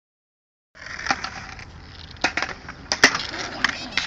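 Skateboards on concrete: several sharp clacks of boards hitting the ground, about five in a few seconds, the loudest about three seconds in, over a steady hiss.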